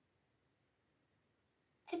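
Near silence: a pause in a woman's talk, her voice starting again right at the end.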